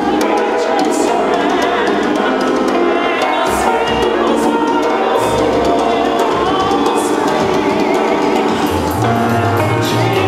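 A live band playing a song with a singer, the singing wavering with vibrato over keyboard and a bass line.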